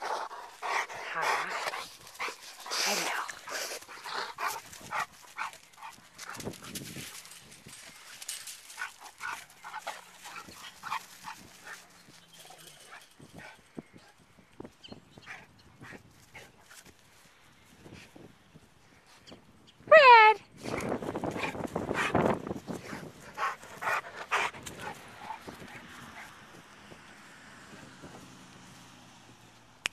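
Cane Corso dogs moving about in grass, with one short, loud yelp that falls in pitch about twenty seconds in.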